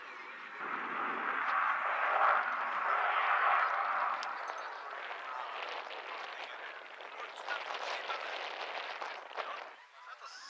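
Su-27UB fighter's twin AL-31F turbofan engines passing overhead. The noise swells about a second in and is loudest around two to four seconds in. It then slowly fades with a ragged crackle and drops away near the end.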